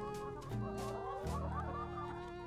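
Caged laying hens clucking, with background music held underneath.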